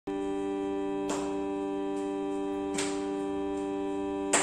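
Steady shruti drone holding one pitch and its harmonics, setting the key for Carnatic devotional singing, with two sharp metallic strikes, about a second in and near the three-second mark.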